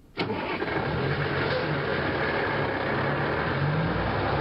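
Heavy truck's diesel engine starting with a sharp crack about a quarter second in, then running steadily with a low hum.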